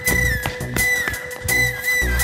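Background music score: a high whistle-like melody holds one long note, dipping briefly about a second in and wavering in quick dips near the end, over a steady drone and a percussive beat with bass.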